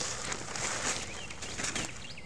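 Small birds chirping in short, quick calls over a rustling hiss.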